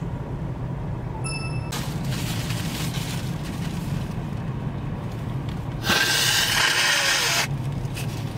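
A person blowing their nose into a tissue: a softer blow about two seconds in and a longer, louder one about six seconds in, over the low hum of an idling car's cabin.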